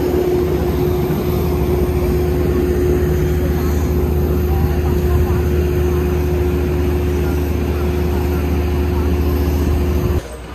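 Aircraft engine running steadily on the airport apron: a constant loud hum over a deep rumble.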